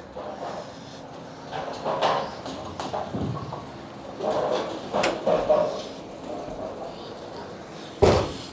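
Bowling pins clattering as a ball strikes them down the lane, then the pinsetter working, with a sharp knock about five seconds in.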